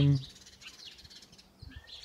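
Faint birdsong: small birds chirping in the background, with a clearer call near the end.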